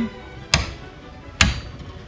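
Click-type torque wrench clamped in a vice giving two sharp clicks about a second apart as it is pulled in its forward direction, the direction its click mechanism works in.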